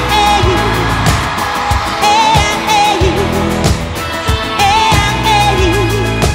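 A live country-pop band playing an instrumental stretch of the song over a steady drum beat, with a wavering melodic figure that comes back about every two and a half seconds.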